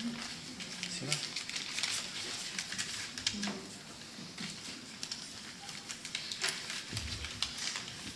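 Paper rustling and crinkling with scattered sharp crackles, as ballot envelopes are handled and ballots unfolded for a vote count, under low murmured voices.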